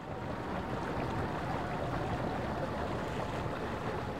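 Steady outdoor sea-and-wind noise: calm water washing against a harbour shore, with wind on the microphone, fading in at the start.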